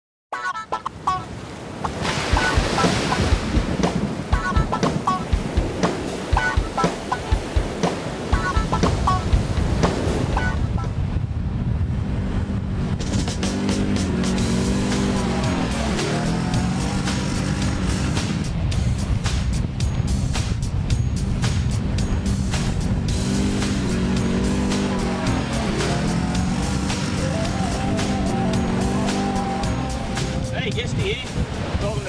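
Opening theme music with a beat. From about a dozen seconds in, a 2010 BRP Can-Am ATV's engine runs under it, its revs rising and falling repeatedly as it rides over sand.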